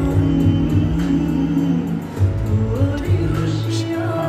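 A male vocalist sings a slow Bollywood ballad over instrumental backing, holding long notes that slide in pitch.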